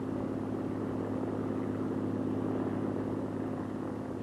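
Convair XFY-1 Pogo's Allison YT40 turboprop engine and contra-rotating propellers running with a steady drone in flight.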